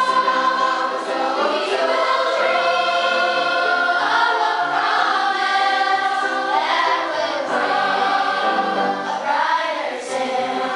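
A large mixed school choir singing, holding long notes in full chords.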